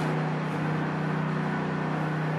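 Generator running steadily: a constant drone with one strong low tone and its overtones.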